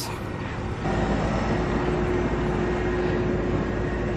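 A steady machine hum with a constant low tone, coming in about a second in and holding level.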